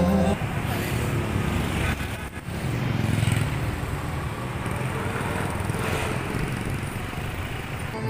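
Street traffic noise: a steady rush of passing cars' engines and tyres, dipping briefly about two and a half seconds in.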